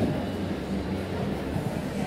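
A pony cantering on the sand surface of an indoor arena: muffled hoofbeats over a steady low rumble.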